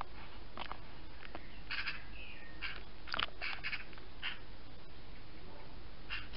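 Birds calling: short, harsh notes in a cluster about two seconds in and again over the next two seconds, with one brief curved whistle between them.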